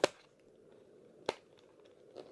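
Two sharp clicks about a second and a quarter apart, with quiet between them: fingers pressing and picking at a perforated cardboard door on an advent calendar, trying to pry it open.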